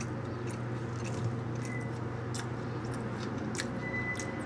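A person chewing food close to the microphone: scattered soft, wet mouth clicks over a steady low hum.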